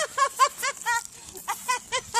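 A woman laughing in a run of short, high-pitched 'ha' bursts, about four a second, with a brief pause midway.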